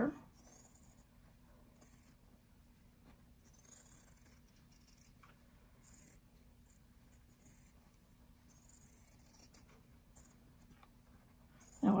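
Scissors snipping quietly and irregularly through fabric, with soft rustling of the cloth, as the seam allowance is trimmed around a sewn appliqué shape.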